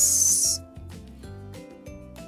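A short, loud swish of paper being pressed and slid flat on a tabletop as a fold is creased, ending about half a second in; soft background music plays underneath.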